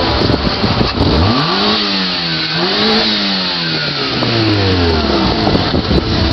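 A car engine revving: it climbs quickly about a second in, holds high with a brief dip and a second push, then winds down slowly over a couple of seconds and stops shortly before the end.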